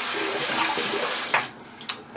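Water running from a sink faucet, shut off about a second and a half in, followed by a short sharp click near the end.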